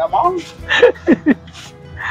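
Short voice sounds, a few quick calls falling in pitch, over background music with a steady held note.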